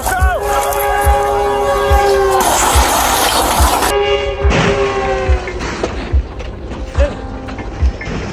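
A commuter train's horn blaring a held multi-note chord that sinks slightly in pitch as the train closes on a small plane crashed across the tracks. A burst of crashing noise from the impact comes about two and a half seconds in. The horn sounds again for a second or so just after four seconds, over a steady music beat.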